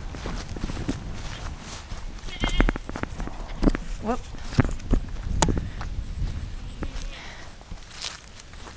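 Footsteps of a person hurrying across dry pasture ground, uneven thuds with the camera jostling and a low rumble of wind on the microphone, and a short 'whoop' about four seconds in.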